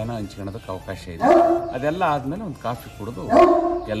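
Two loud animal calls, each about half a second long and steady in pitch, about one second and three seconds in, over a man talking.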